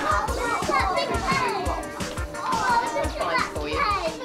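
Many young children chattering and calling out at once, over background music.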